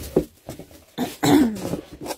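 A person clearing their throat: a short burst just after the start, then a louder, longer throat-clear about a second in that drops in pitch.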